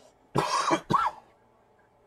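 A man coughing: two short bursts, the first longer, close together about half a second in.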